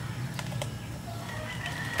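Quiet outdoor background with faint distant bird calls, and a couple of soft cracks about half a second in as hands pry apart a pomelo's thick scored rind.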